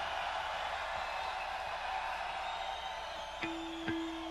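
Lull between songs at a live heavy metal gig: a low wash of hall and crowd noise over amplifier hum, then a single electric guitar note held for about a second near the end.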